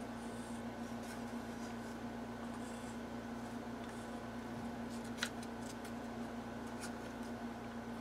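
Wooden popsicle stick stirring two-part clear casting resin in a plastic cup: faint scraping and scratching, with one sharp tap of the stick against the cup about five seconds in. A steady low hum runs underneath.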